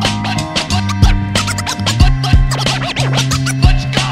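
Hip-hop beat with DJ turntable scratching over it: deep kick drums and a held bass line under short back-and-forth scratches, in the instrumental break after the rapped verse.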